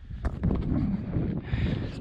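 Wind buffeting the microphone, a dense low rumble.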